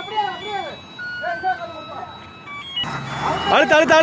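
Men shouting rhythmic guiding calls, over a short electronic tune of steady beeps stepping between pitches. A low vehicle engine rumble and louder shouting come in near the end.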